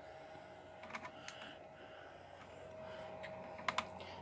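A few faint clicks of buttons being pressed, one about a second in and a quick cluster near the end, over a faint steady high hum that stops near the end.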